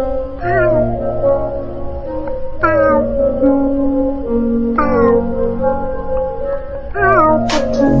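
AI cover song sung in cat meows over sustained backing music: four long meows that each slide down in pitch and then hold, about two seconds apart.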